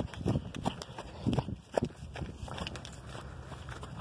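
Footsteps walking on grass, a soft thud about every third of a second, thinning out in the second half.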